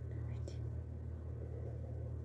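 Steady low electrical hum with faint hiss, and a soft click about half a second in.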